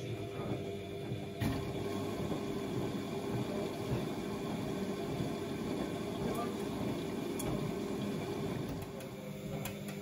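Bosch WFO2467GB front-loading washing machine tumbling a wet load in its drum, the water sloshing over a steady motor hum, with a sharp click about one and a half seconds in.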